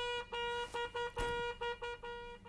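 News-channel breaking-news transition sound: a single horn-like electronic tone at one steady pitch, pulsing on and off about four times a second, with a brief low thump a little past the middle.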